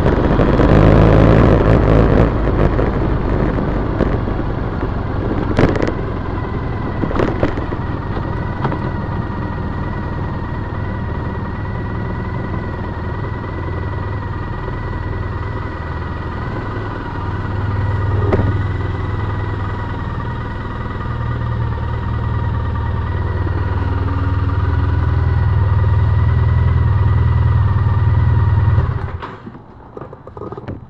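2010 Triumph Bonneville T100's parallel-twin engine running at low speed as the bike pulls in, with wind rush in the first few seconds, then idling with a steady low rumble. It cuts off abruptly about a second before the end as the engine is switched off.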